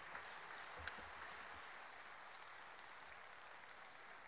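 Faint audience applause, an even patter that tapers off slightly.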